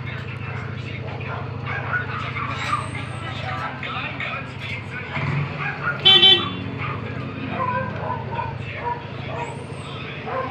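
A vehicle horn gives a short, loud double toot about six seconds in. It sounds over a steady low hum and background voices.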